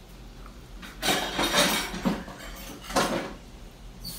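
A plastic bowl knocking and scraping against a disposable aluminium foil tray as sauce is poured out. There are two bursts of clatter: a longer one about a second in and a shorter one near three seconds.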